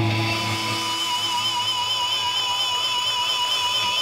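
Amplified instruments of a live heavy metal band holding sustained notes: a low drone that stops about two seconds in, with steady high ringing tones, one of them wavering, carrying on to the end.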